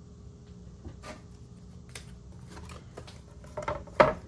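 Faint rustling and light taps of cardstock being handled on a table, with a few louder knocks near the end.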